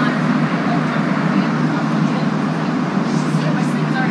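Steady interior running rumble of a Montreal Metro Azur (MPM-10) rubber-tyred train car in motion, with passengers talking in the background.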